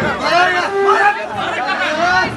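Several men's voices talking loudly over one another in an argument, too tangled to make out words.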